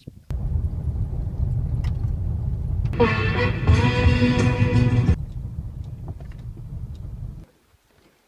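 Steady low rumble inside a car's cabin as it drives on a gravel road, cutting off abruptly near the end. For about two seconds in the middle, music is heard over it.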